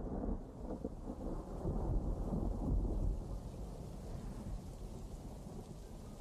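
A long roll of thunder with rain. It rumbles loudest in the first three seconds, then slowly fades.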